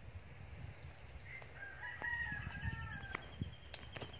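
A rooster crowing once, a single call of about two seconds starting about a second and a half in.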